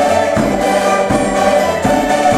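A Portuguese cavaquinho ensemble strumming together while a group of women sing, with a bass drum keeping a steady beat about every three-quarters of a second.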